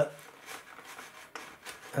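Faint rubbing and handling sounds of fingers working a fuel hose and the balsa fuselage of a model aircraft, with one small click about halfway through.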